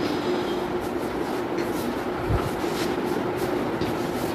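Steady background hum and hiss of room noise, with one steady low tone throughout and a brief low bump about two seconds in.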